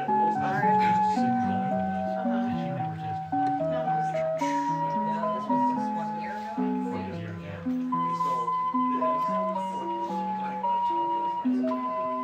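Rhythm Small World musical wall clock playing its electronic melody: a tune of clean, stepping notes over a moving bass line.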